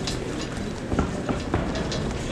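Steady sports-hall background noise with a few short knocks, about one second in and again near the end, from two kickboxers exchanging gloved blows and moving on the ring canvas.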